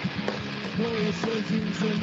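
Live metal band playing over a video call: drums with a thick, distorted guitar sound and a short melodic line that repeats several times.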